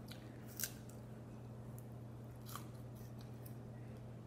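Apple core being bitten and chewed: a few short, crisp crunches, the loudest about half a second in, over a faint steady low hum.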